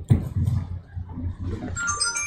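Handling noise from a handheld microphone as it is moved and held out at arm's length: a sharp bump at the start, then uneven low thumps and rumble. Near the end a few steady high ringing tones begin.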